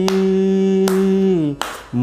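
A man's voice holding one long steady sung note on the last syllable of 'Pandhari', in raag Kafi, while his hands clap the beat at an even pace. The note breaks off about one and a half seconds in, then a clap, and the singing picks up again at the end.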